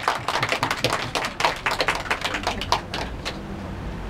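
A small group clapping, a dense patter of claps that thins out and stops about three seconds in.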